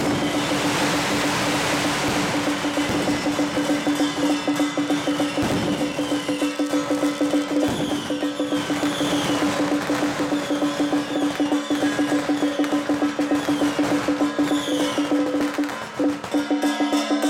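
Percussion band accompanying a Song Jiang battle array drill: drums beating a fast, even rhythm over a steady ringing tone, with a cymbal-like wash in the first couple of seconds.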